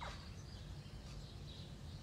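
Faint, scattered birdsong over a low, steady background rumble of outdoor ambience.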